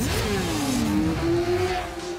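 Racing motorcycle engine at high revs passing by: its pitch rises sharply and then falls away over about a second, followed by a steadier engine note.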